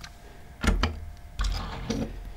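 Die-cast metal toy cars being handled and set down on a wooden tabletop: two short clattering knocks, one about two-thirds of a second in and another a little after halfway.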